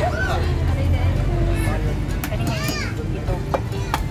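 Women's voices chattering and laughing, with a few high squeals, over a steady low hum of outdoor background noise.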